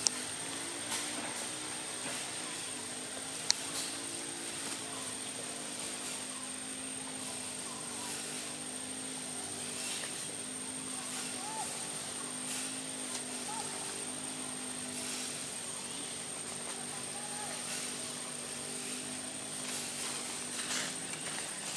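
A steady low engine drone, like a distant motor or aircraft, dipping slightly in pitch about four seconds in, with a thin steady high tone over it and one sharp click about three and a half seconds in.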